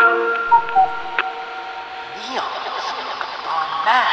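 Eerie radio-like voices with a hiss of static, warbling and sliding down and up in pitch, as the held chord of the music fades away, with a few clicks.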